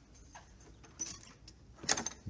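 Faint footsteps and rustle, then a sharp metallic clack shortly before the end as a glass-and-aluminium entrance door is pushed open.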